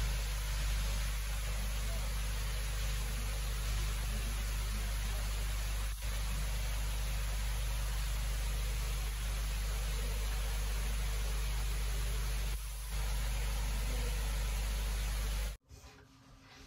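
A steady rushing noise with a heavy low rumble underneath, dipping briefly twice, that cuts off abruptly near the end.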